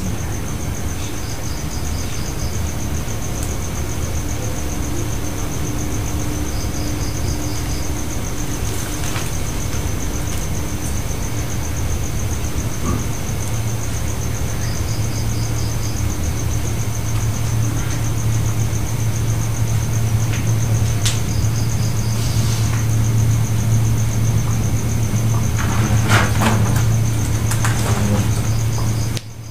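A steady low hum that slowly grows louder, under a continuous high, rapidly pulsing trill like crickets, with short high chirps every few seconds.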